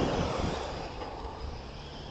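Steady outdoor background rumble and hiss with nothing standing out, fading over the first second and then staying low.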